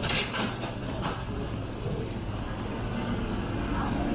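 Busy restaurant room noise: a steady low hum with a few brief clatters in the first second or so.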